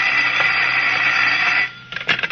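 Telephone bell sound effect in an old radio drama: one long, steady ring that stops shortly before the end.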